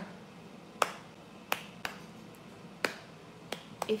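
A slow, unhurried beat of sharp finger snaps, about one a second, with a couple coming closer together.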